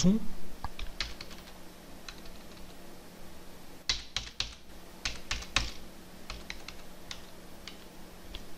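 Computer keyboard keys clicking in short groups as Windows + minus and Windows + plus shortcuts are pressed to step the Windows Magnifier zoom down and up, with the busiest bursts about four and five and a half seconds in.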